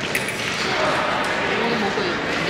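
Background voices of many people in a large, echoing hall, with a sharp click just after the start.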